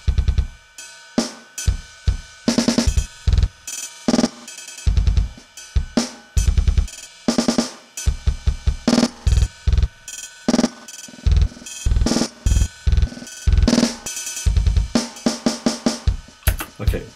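A drum loop (kick, snare and cymbals) chopped by Steinberg LoopMash FX's one-quarter stutter effect, with hits retriggered in short bursts of fast, evenly spaced repeats. The length of the stutter changes as the automated grid size plays back.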